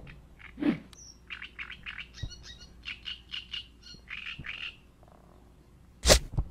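A bird chirping: a quick run of short, high notes from about a second in until near the end, with a lower call just before it.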